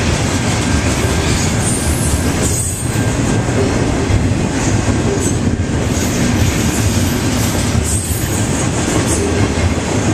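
Double-stack intermodal freight cars rolling past close by: a steady, loud rumble and clatter of steel wheels on the rails.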